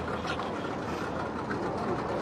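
Steady running rumble of a motor yacht's engine, with faint voices over it.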